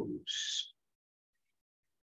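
The tail of a man's spoken word ("collarbones") ending in a short hiss, then silence.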